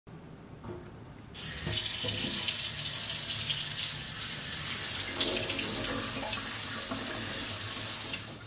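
Water running from a spring-spout pull-down kitchen faucet into the sink. The tap is turned on about a second in and the stream runs steadily after that.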